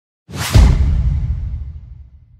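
Logo-reveal sound effect: a short whoosh that lands on a deep boom about half a second in, then fades away over the next two seconds.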